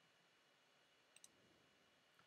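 Near silence: room tone, with two faint, quick clicks close together about a second in.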